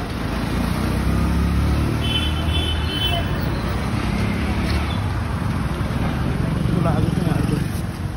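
City street traffic: vehicles running past with a steady low rumble. A brief high-pitched tone sounds about two seconds in.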